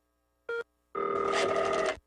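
A telephone ringing: a short blip about half a second in, then one ring lasting about a second near the end.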